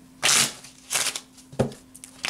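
A deck of tarot cards shuffled by hand: three short rustling bursts of cards sliding against each other, the last a sharper, shorter snap.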